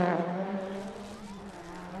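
Rally car's engine fading as it drives away after passing at speed, its note dropping from loud to a fainter, steady buzz within the first second.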